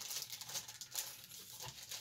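Faint rustling and soft ticks of paper and a plastic bag being handled inside a cardboard model-kit box.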